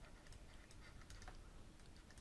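Near silence with a few faint taps and clicks from writing with a stylus on a digital pen tablet.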